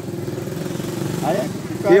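Motorcycle engine idling steadily, a low even pulsing. A voice sounds briefly in the middle and speech begins at the very end.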